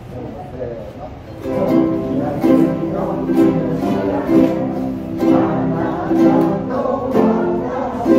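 Ukulele and guitar ensemble starts playing about a second and a half in, strumming chords in a steady beat of a little under one stroke a second.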